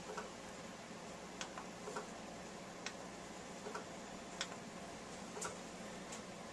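Faint, irregular clicks, about one a second, over a low steady hiss.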